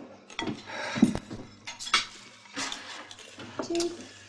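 Cutlery and crockery clinking and knocking at a table: several separate clicks and knocks, the sharpest about a second in.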